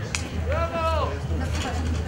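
A short high-pitched voice call about half a second in, rising, held briefly and then falling, over a steady low rumble.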